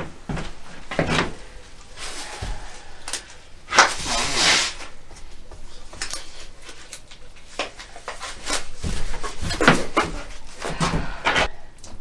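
Intermittent handling noises from hands-on work at a table: short knocks and rustling or scraping bursts. The loudest is a noisy burst about four seconds in, and a cluster of knocks comes near the end.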